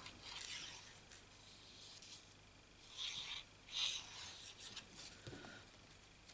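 Sheets of cardstock being handled and moved about on a craft mat: a few short, soft rustles and slides of paper, the clearest about three and four seconds in.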